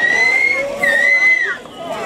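Someone in the audience whistles two long, high-pitched notes, the first sliding up and held, the second ending with a drop, in answer to the host's call for noise. The crowd's response is thin: no broad cheering is heard.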